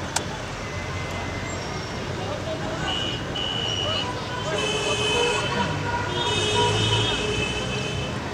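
Roadside street ambience: traffic noise and people's voices, with vehicle horns sounding about three seconds in and again through the second half.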